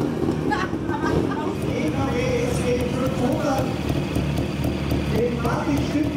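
Vintage motorcycle engine running at low revs, mixed with the chatter of a crowd.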